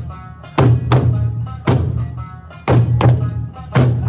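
Eisa drum dance: large barrel drums (ōdaiko) struck in unison, heavy beats about once a second, over accompanying music with a steady melody.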